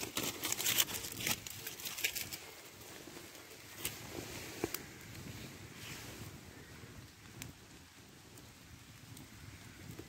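Small wood fire crackling in a Stealthfyre flat-pack twig stove, with butter sizzling in the steel frying pan on top. A dense run of sharp pops comes in the first two seconds, then occasional single pops over a soft hiss.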